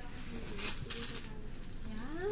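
Faint, low voices in the room, with two short rustles: one a little after half a second and one about a second in.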